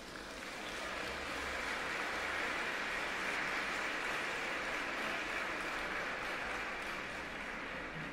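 Audience applauding, swelling about a second in and easing slightly near the end.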